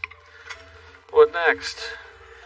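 A man's voice: a short spoken utterance about a second in, over a steady low hum.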